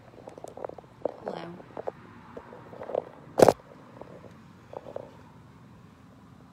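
Handling noise from a phone being moved and repositioned: scattered small knocks and rubs, with one sharp click about three and a half seconds in.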